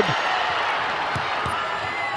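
Steady arena crowd noise with a basketball dribbled on the hardwood court, a few low bounces.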